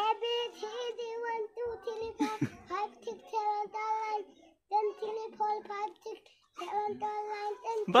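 A young child reciting in a sing-song chant, each syllable held on a near-level note, in short phrases with brief pauses.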